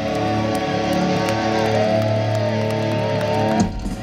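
Live old-school heavy metal band playing loud through a festival PA, with electric guitar holding long, wavering notes over bass and drums that break off sharply near the end.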